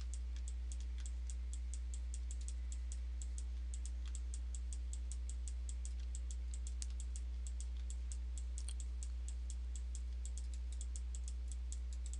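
Rapid, irregular clicking of a computer mouse and keyboard at a desk, about five clicks a second. A steady low electrical hum runs underneath.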